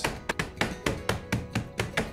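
Meat tenderizer mallet striking glazed pecan halves in a plastic sandwich bag on a wooden cutting board, breaking them up. The taps and cracks come quickly and evenly, about six a second.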